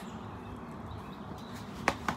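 A golf club striking a teed-up golf ball once near the end, a single sharp click.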